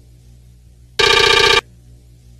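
A short electric ringing buzz, rapidly pulsing and loud, lasting about half a second and starting about a second in: a cartoon-style ring sound effect.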